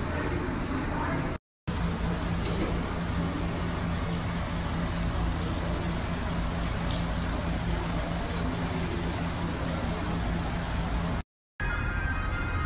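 Indoor tiered water fountain splashing steadily, with a low steady hum under it. The sound drops out briefly twice, about a second and a half in and near the end.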